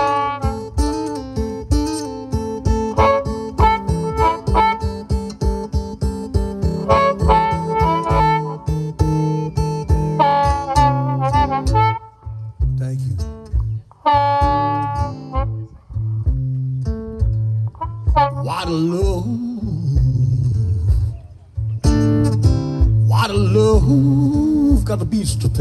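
Acoustic blues boogie: an acoustic guitar plays a driving boogie rhythm with a harmonica playing over it. The music thins out in the middle, leaving held, wavering notes, then fills back in near the end.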